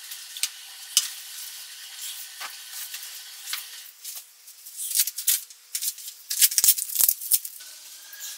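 Cushions and throw blankets being handled and arranged on a couch: irregular rustling and crackling of fabric, busiest in the second half, with a few soft thumps as pillows are set down near the end.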